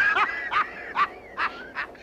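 A man laughing in a string of short, high-pitched bursts, about half a dozen of them.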